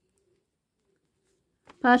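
Near quiet with a faint, low, wavering bird call in the background; a voice starts speaking near the end.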